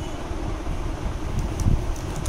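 Steady low rumble of moving air from a room fan buffeting the microphone, with faint light taps of a pen tip on calculator keys.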